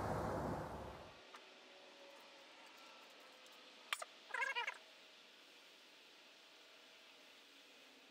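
Faint background hum fading out in the first second. Just before four seconds in comes a click, then a brief wavering, high-pitched animal call much like a cat's meow.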